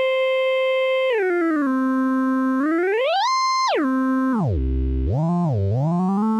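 Modal Argon 8M wavetable synthesizer sounding one held, bright note while oscillator 1's Tune control is turned. The pitch steps down about an octave about a second in, climbs high near the middle, plunges to a deep low, wobbles up and down, then settles at a mid pitch.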